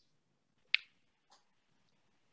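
Near silence with one short, sharp click under a second in, followed by two faint ticks.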